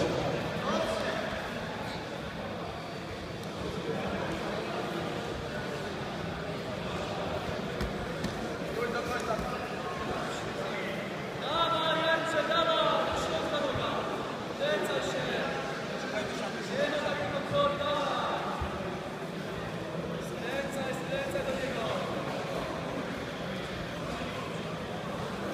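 Indistinct voices and chatter in a large sports hall, with men's voices rising out of it at intervals, most strongly about twelve seconds in and again between about fifteen and eighteen seconds.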